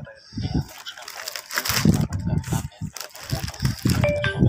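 Thin plastic carrier bag rustling and crinkling as it is handled and carried close to the microphone.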